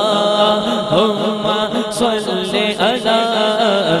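Male voice singing a naat, unaccompanied devotional chant amplified through a microphone and PA, with long gliding notes. There is a short tick about two seconds in.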